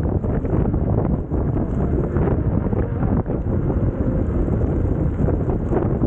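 Loud, gusty wind buffeting the microphone of a camera mounted low on a moving electric unicycle.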